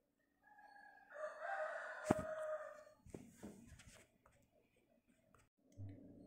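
A rooster crowing once, faintly: a single long call that swells about a second in and lasts a couple of seconds.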